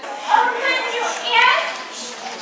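A crowd of children's voices talking and calling out at once, with two louder high-pitched calls, about a third of a second and a second and a half in.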